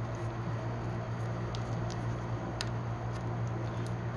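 Faint clicks and handling noise from a plastic wiring-harness plug being worked back into its socket on an ATV's wiring, over a steady low hum.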